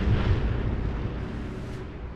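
Deep rumbling rush of a four-engine B-24 Liberator bomber sweeping close past, loudest at first and fading steadily over about two seconds.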